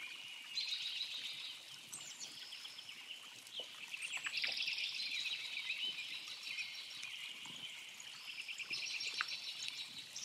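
Several songbirds singing and calling at once in an overlapping chorus, with quick chirps and a fast trill about four and a half seconds in and another near the end.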